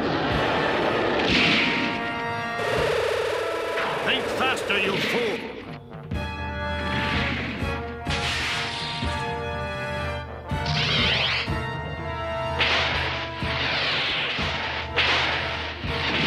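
Animated-battle sound effects: a series of crashes and impacts every second or two, mixed with creature roars and snarls from the robot beasts, over dramatic background music.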